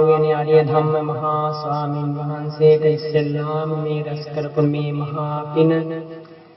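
A man's voice chanting in Buddhist style, drawing out long syllables on a steady pitch.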